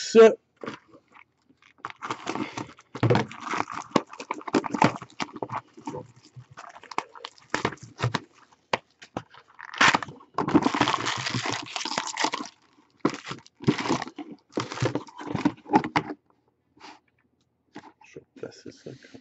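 Plastic wrap being torn and crinkled off a sealed 2016 Topps Stadium Club baseball card box in irregular crackling bursts, with a longer stretch of crinkling about ten seconds in.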